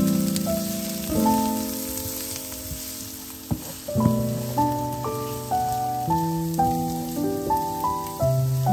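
Diced onion and carrot sizzling as they fry in a pan, stirred with a wooden spatula, with a few faint ticks. Background music of notes that start and fade one after another plays over it.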